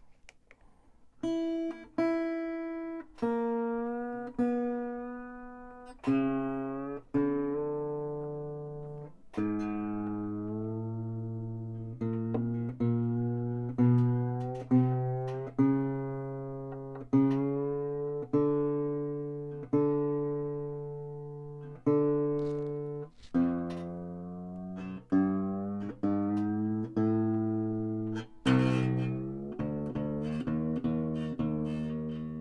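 Three-quarter-size Stagg SW-201 steel-string acoustic guitar being tuned up after restringing: single strings plucked one at a time, every second or two, each note ringing and fading while the peg is turned, so the pitch shifts slightly from pluck to pluck. Near the end several strings ring together.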